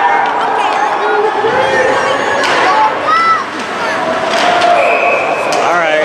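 Indistinct chatter and calls of spectators in an ice hockey rink, several voices overlapping, with a few sharp knocks from play on the ice.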